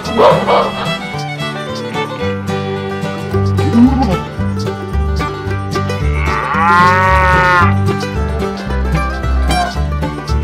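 A cow moo sound effect: one long call, about a second and a half, starting about six seconds in, over background music with a steady bass line.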